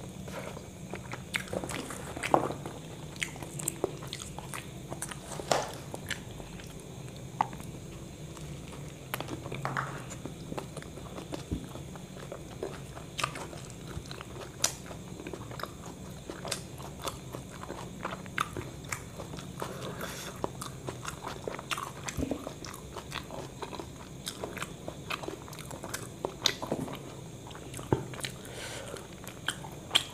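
Close-miked chewing and biting of a crispy fried-chicken and cheese burger: irregular crunchy bites and wet mouth sounds. A steady low hum runs underneath.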